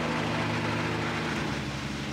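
Engine of an old six-wheeled open-top double-decker bus running steadily with a low hum.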